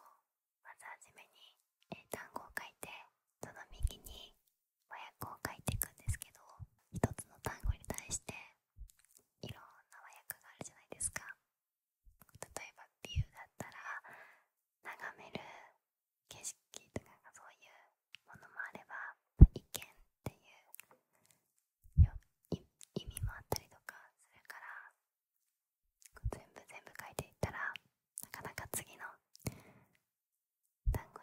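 A woman whispering in Japanese close to a handheld recorder's microphones, with many small clicks and a few sharp low thumps between phrases, the loudest about halfway through.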